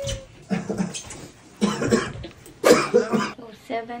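A child making short, breathy vocal bursts, about four of them a second or so apart. A woman starts talking near the end.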